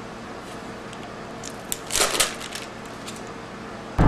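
A few light clicks and a short clatter of small hard objects being handled on a kitchen counter, the loudest cluster about two seconds in, over quiet room tone.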